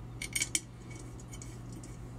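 Small screws clinking against the aluminium accelerator plate of an oil centrifuge bowl as they are fitted by hand: three or four quick, ringing metallic clinks in the first half second, then only faint handling ticks.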